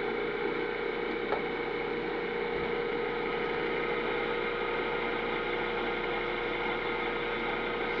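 Electric motor running steadily with an even hum made of several constant tones, with a faint click about a second in.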